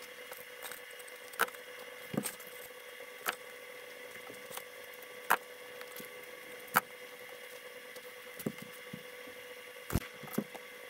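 Foam blocks being handled and set down on a concrete floor: light scuffs and squeaks with about half a dozen sharper knocks spread through, over a faint steady hum.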